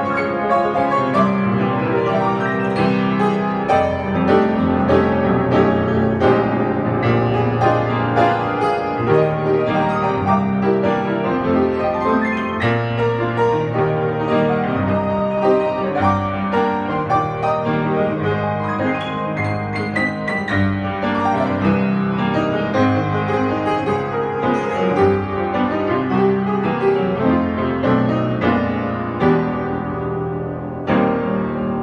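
1920s Bösendorfer Model 214 seven-foot grand piano, lid open, played without a break, with many notes and chords sounding together. The player says the dampers can be heard needing new work.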